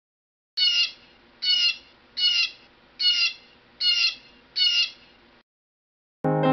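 Blue jay calling six times in a steady series, the short calls a little under a second apart, each dropping slightly in pitch.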